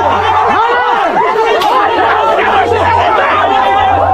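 A group of tribesmen chanting and shouting together, many overlapping voices in rising-and-falling calls.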